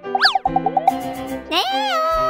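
Children's cartoon music with a quick rising-and-falling glide sound effect near the start and a rapid run of short notes after it. About a second and a half in, a high cartoon voice lets out a wavering 'ooh' of surprise.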